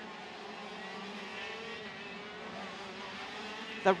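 KZ2 125cc two-stroke gearbox karts racing on track, their engines a steady high drone that rises and falls slightly in pitch midway.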